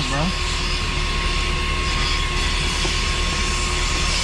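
Public self-service car vacuum running at full suction, a steady loud rush of air with a constant motor whine.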